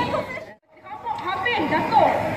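People talking, not clearly enough to make out words. The talk drops out to a brief silence about half a second in, then voices resume.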